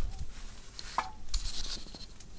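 Rustling and light knocks as camping gear and tent fabric are handled: a dull thump at the start, then a short crinkly rustle a little past halfway.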